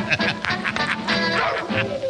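Swing-style jazz music with brass horns playing as the show's music cue.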